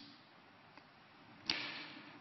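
Near silence, then about one and a half seconds in, a short sudden hiss that fades away within half a second.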